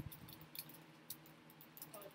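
Faint crinkles and ticks of clear plastic food packaging being handled and pried open by hand, with a soft bump right at the start.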